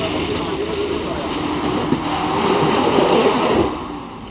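Mitsubishi Pajero engine working hard under load in low-range four-wheel drive, second gear, as the 4x4 crawls up through deep mud with the tyres churning; the sound drops away sharply near the end.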